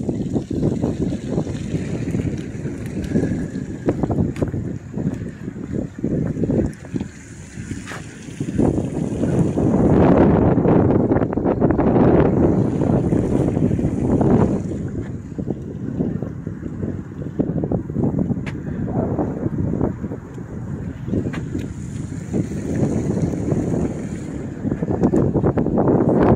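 Wind buffeting an open microphone: an irregular low rumble that rises and falls in gusts, strongest about ten to fourteen seconds in.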